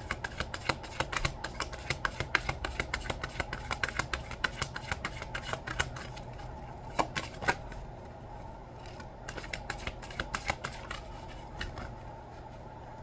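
A tarot deck being shuffled overhand, cards slapping against each other in a quick run of soft clicks, several a second. The clicks thin out and grow quieter from about eight seconds in.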